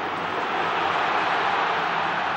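Rugby stadium crowd cheering as a scrum goes down, the noise swelling a little over the two seconds.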